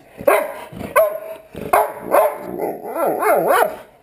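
Dog vocalizing excitedly: several short bark-like calls, then a longer yowling call near the end whose pitch wavers up and down.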